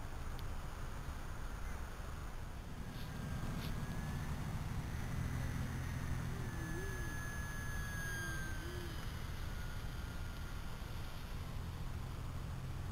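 Steady low rumble of outdoor wind on the microphone, with the faint thin whine of a distant radio-controlled model plane's motor sliding slightly in pitch as it flies.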